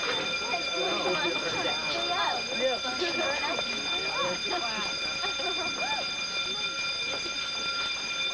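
School fire alarm sounding without a break, a steady high-pitched tone, over the chatter of many children's voices.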